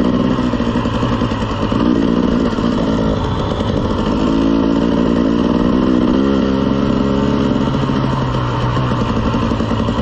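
Dirt bike engine running at low trail speed, its pitch rising and falling with the throttle.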